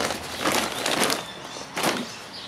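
Plastic sack rustling and crinkling as it is handled, with a short sharp knock near the end.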